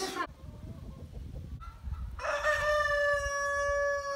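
Rooster crowing: one long, held call that starts about two seconds in.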